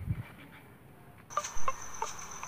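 A steady high-pitched buzz of insects, crickets, starts abruptly about a second and a half in, with a few sharp clicks and a brief thump over it.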